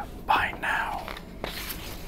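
A man whispering a few words of a story, then the short papery rustle of a picture-book page being turned.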